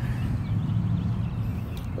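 A steady low rumble of outdoor background noise, with no sudden events.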